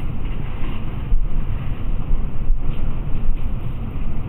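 Steady low rumble of background noise, with a couple of faint soft knocks about a second in and midway.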